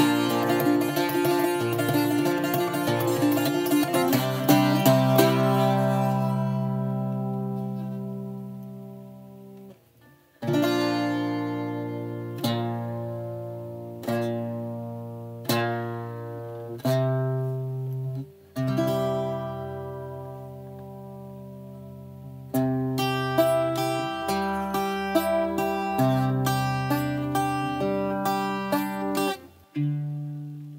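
Irish bouzouki played solo. A quick run of picked notes rings away into a long fade. Single chords are then struck about every second and a half and left to ring, before the picking quickens again in the last third.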